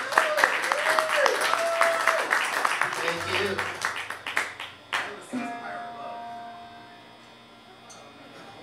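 Small audience clapping and cheering at the end of a live rock song, dying away about five seconds in, then a click and a quiet held tone from the stage.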